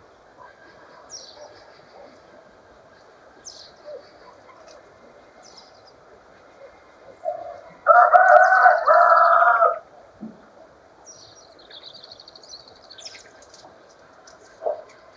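A rooster crowing once, a loud call of about two seconds in two parts, starting around eight seconds in. Faint high chirps and whistles of small songbirds are heard throughout.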